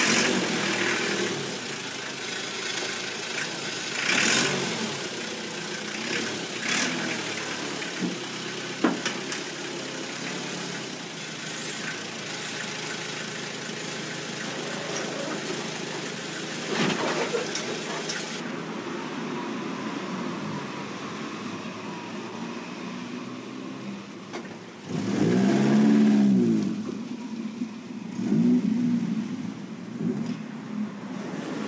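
Engine of a small yellow site dumper running steadily, with some knocks and clanks, then revving up and falling back loudly a little past three quarters of the way through.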